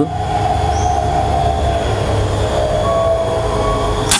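Steady low rumble, typical of wind on the microphone, with a faint, slowly falling hum above it. Right at the very end comes the sharp crack of a Bocap FX Crown 500cc PCP air rifle firing.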